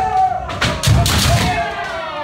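Kendo sparring: drawn-out kiai shouts from several fencers over sharp cracks of bamboo shinai strikes and stamping footwork on a wooden floor.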